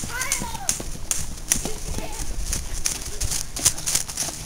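Running footsteps with irregular clicks and thumps, about three or four a second, with the camera jostling as it moves. A brief voice comes in shortly after the start.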